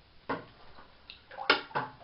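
A few short splashes and knocks in bathtub water as a large wooden deep-diving lure is worked on the rod and lifted out, with one sharp click about one and a half seconds in.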